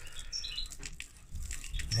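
Mixed bird feed (pellets, seeds and grain) trickling from a hand onto a tub of feed: a light, irregular rustling patter of falling grains.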